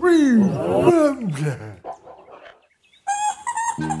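A cartoon ogre's deep wordless voice giving two loud calls, each sliding down in pitch. After a brief silence, a cheerful music jingle starts about three seconds in.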